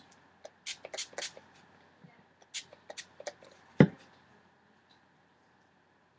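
Handling sounds: a scatter of sharp clicks and crinkles from a small plastic squeeze bottle worked by hand over a wet papier-mâché mask, with one louder knock just before the four-second mark.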